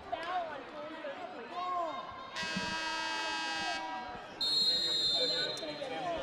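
Arena horn sounding one steady blast of about a second and a half, signalling a timeout, over the murmur of the crowd and voices in the gym. About a second after it ends comes a shorter, higher-pitched steady tone.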